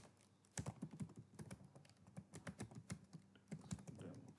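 Faint typing on a computer keyboard: a quick, irregular run of key clicks that starts about half a second in, after one single louder click.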